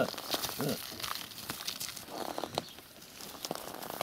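Sheep crunching pieces of raw carrot fed from a hand: a run of irregular crisp clicks and crackles.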